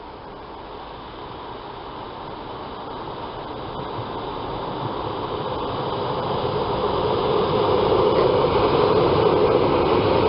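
ER2-series electric multiple unit approaching and passing: the rumble of its wheels on the rails grows steadily louder and reaches full level about eight seconds in as the carriages roll by.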